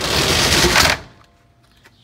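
Roll-up compartment door on a fire engine being pulled down shut: a loud rattle of its slats lasting about a second.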